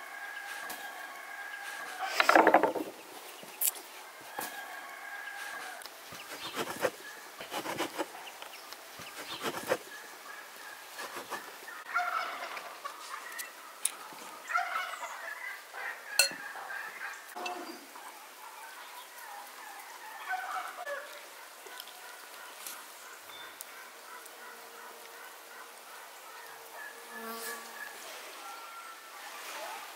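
Domestic fowl calling repeatedly in the background, the loudest call about two seconds in, with a few light clicks from handling at the table.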